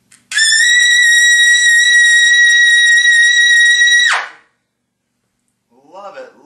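Trumpet on a Neill Sanders 17S mouthpiece playing a loud double high C, scooping slightly up into the pitch and then held steady for about four seconds before stopping cleanly.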